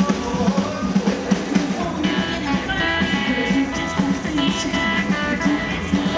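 Rockabilly band playing live through an instrumental passage: guitar lines over a steady drum beat.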